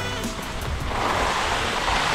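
Background music trailing off at the start, then a steady hiss of skis sliding and scraping over packed snow, growing louder from about a second in.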